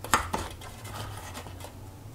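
Baked tapioca-starch rolls being lifted out of a metal baking tin: two light knocks against the tin within the first half second, then faint handling noise.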